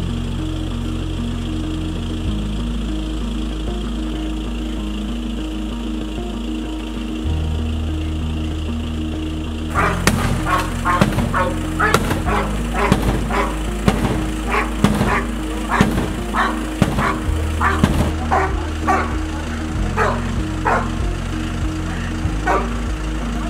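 A backing track of low sustained chords that change every few seconds. About ten seconds in, a police dog starts barking repeatedly, about two barks a second, over the music.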